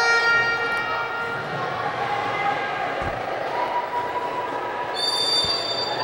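Indoor sports-hall crowd and court ambience, with a referee's whistle sounding briefly for about a second near the end to signal an indirect free kick.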